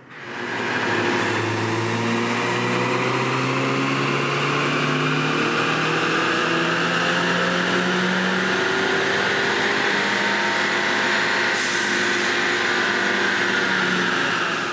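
Ford Mustang EcoBoost's turbocharged 2.3-litre four-cylinder, fitted with an Airaid intake tube, running a wide-open-throttle pull on a chassis dyno. The engine note climbs slowly and steadily in pitch for the whole pull.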